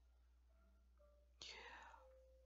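Near silence: room tone through a headset microphone, with a faint intake of breath near the end.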